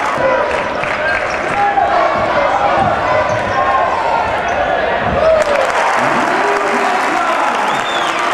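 Live basketball game sound: a ball bouncing on the hardwood court amid the steady murmur of players' and spectators' voices, with a sharper strike about five seconds in.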